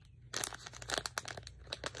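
Clear plastic bag crinkling and crackling as it is handled, starting about a third of a second in.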